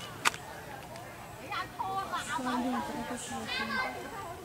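People's voices chattering in the background, with one sharp click about a quarter of a second in.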